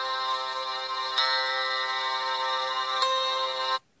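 A recorded musical sound effect played back from a phone: a sustained chord of held electronic tones that shifts twice and cuts off suddenly near the end.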